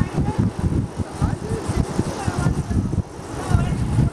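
Wind buffeting the microphone of a camera on a moving bicycle: an uneven, gusty rumble.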